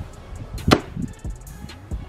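A sledgehammer smashes down once onto a half honeydew melon on a plastic step stool: a single sharp, wet crunching impact a little under a second in.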